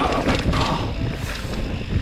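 Mountain bike ridden down a dirt singletrack, recorded on a body-mounted action camera: a steady, noisy rumble of tyres on the trail and the rattling bike, with irregular knocks.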